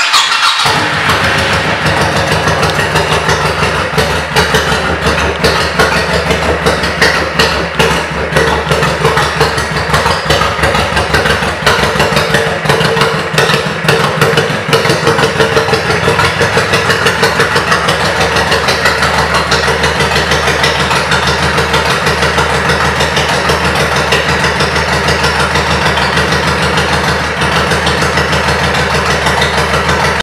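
Honda Shadow Spirit 1100's V-twin engine running at a steady idle, with an even, fast-pulsing exhaust note.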